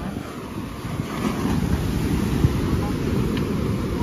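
Rough ocean surf breaking and washing up the sand, mixed with wind buffeting the microphone in a steady low rumble.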